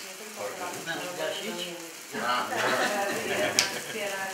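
Cake fountain sparklers fizzing as they are lit, under voices talking in the room, with a sharp click about three and a half seconds in.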